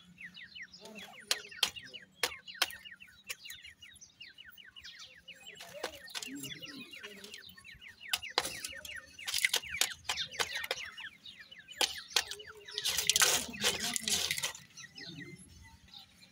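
Francolin (dakhni teetar) chicks peeping in many short, falling, high-pitched chirps, with scattered sharp taps. Two louder bursts of wing-flapping and scuffling come about halfway in and again near the end, as the chicks spar.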